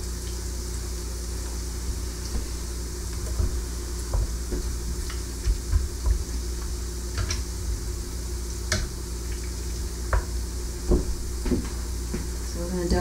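Bacon frying in hot grease in an electric skillet: a steady sizzle, broken by a few short light clicks and taps as the strips are handled and turned with metal tongs.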